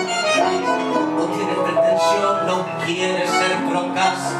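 Tango trio playing an instrumental passage: bandoneón holding and moving between sustained notes over piano and guitar.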